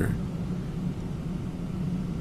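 Steady low rumble of a car running, with an even hiss and no change through the pause.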